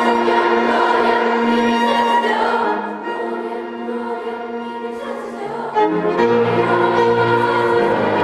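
A large youth choir singing sustained lines with a chamber string orchestra in a reverberant hall; the music eases off around the middle, then swells again about six seconds in as lower notes come in.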